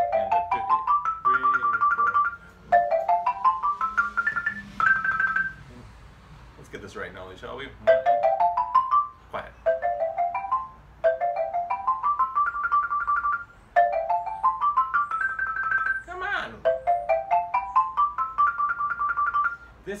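Rosewood-bar xylophone played with two mallets in a double-stop exercise: about eight quick rising runs of notes, each ending in a note repeated several times at the top, with short breaks between the runs.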